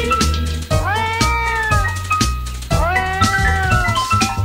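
Two long cat meows, each rising then sliding down, about a second apart, over a song with a steady bass beat.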